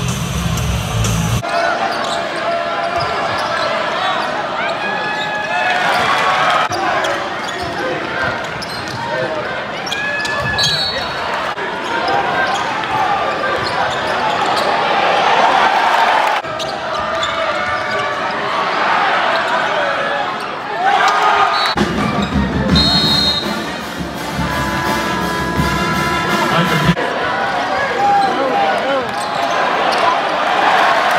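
Arena sound at a college basketball game: crowd chatter and a basketball being dribbled on the hardwood. Bass-heavy music plays briefly at the start and again for several seconds about two-thirds of the way through.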